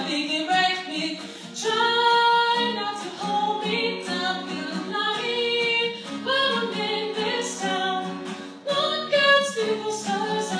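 A woman singing a pop song, holding and bending notes in continuous phrases.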